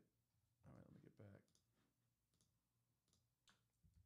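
Near silence with a handful of faint, scattered clicks from working a computer.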